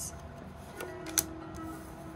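A single tarot card snapping down onto a wooden tabletop about a second in, a sharp click over soft background music with a held low note.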